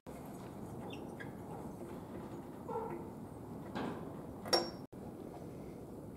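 Low room tone with faint fingers-on-metal handling noise from a spark plug and its copper washer, and one short, sharper click about four and a half seconds in.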